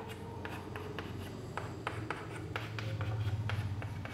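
A pen scratching and tapping as a carbon-chain structure is drawn: many short strokes and clicks, over a faint low hum.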